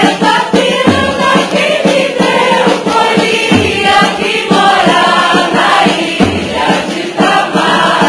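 A group of voices singing together over drum and percussion accompaniment, with low drum beats every few seconds.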